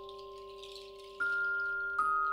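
Contemporary percussion music: metal mallet-instrument notes ring on under a high, shimmering metallic rattle or chime wash. About a second in, a new bell-like note is struck and rings out, louder than what went before. Another strike comes at the end.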